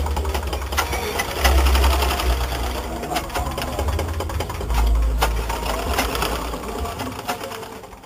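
Sewing machines running, a dense clatter with scattered sharp clicks and a heavy low rumble that comes and goes, fading out at the end.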